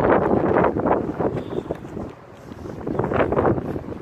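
Wind buffeting a phone's microphone in uneven gusts, easing off briefly about two seconds in and then building again.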